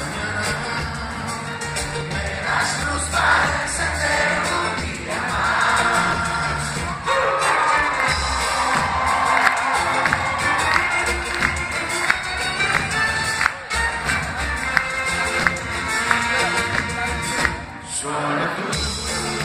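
Live band of acoustic guitars, accordion, violin and drums playing a stretch without lead vocals, with the crowd cheering over the music.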